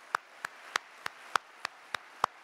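One person clapping hands close to a microphone: steady, evenly spaced claps, about three a second.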